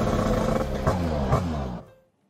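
Cartoon motor-scooter engine sound effect over background music, its pitch falling as the scooter rides off, then cutting off abruptly near the end.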